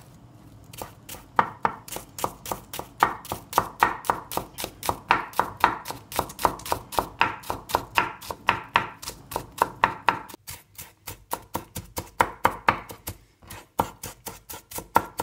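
Chef's knife chopping red onion on a wooden cutting board: a quick, even run of knife knocks on the board, about four or five a second, starting about a second in, with a brief pause about three-quarters of the way through.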